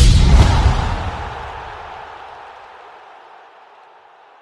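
A loud, deep outro sound effect: a sudden boom-like hit that dies away slowly over about three seconds.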